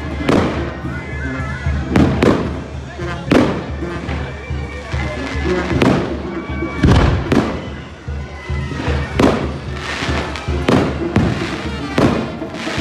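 Fireworks going off in a series of sharp bangs roughly a second apart, each followed by a short echo, over music with a steady bass.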